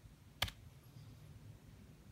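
A single sharp keystroke on a laptop keyboard about half a second in, the Enter key that posts a typed comment, then faint room tone.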